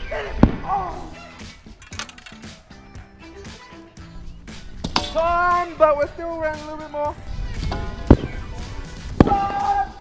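Background music with sharp thuds of heavy objects dropped from a tower hitting the ground: one about half a second in and two more near the end. A long held voice comes in the middle.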